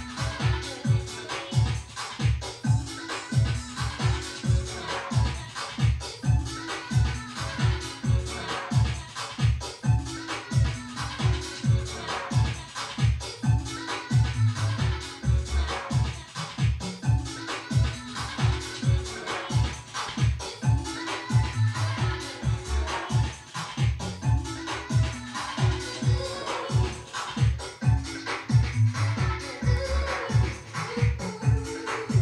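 Electronic dance music with a steady, driving beat, played back from a chrome cassette tape on a Technics RS-BX501 stereo cassette deck.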